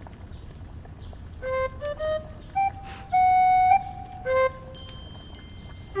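Background music: a flute melody starting about a second and a half in, a few short notes, then one longer held note, with a few high ringing notes near the end.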